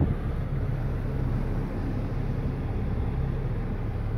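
Steady low hum inside the cabin of a Kia Optima with the car switched on and running.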